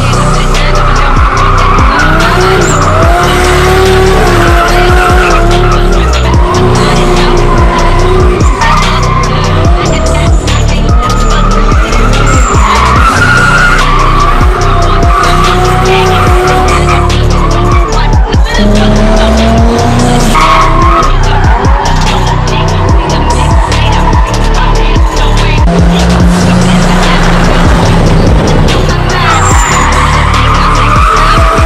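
Nissan Cefiro with a Toyota 1JZ straight-six drifting: the engine revs rise and fall and the tyres squeal through long slides, mixed with electronic music that has a steady beat.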